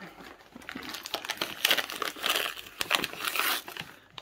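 Christmas wrapping paper crinkling and tearing as a dog noses into and rips open its present. Irregular crackly rustling that builds after about a second, loudest in the middle.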